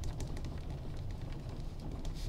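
Pen writing on graph paper: a run of quick, short scratching strokes, over a steady low hum.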